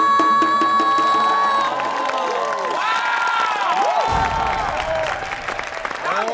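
A female singer in Korean sori style holds one long high final note over the music, which ends a little under two seconds in. The audience then cheers and whoops, many voices rising and falling over one another.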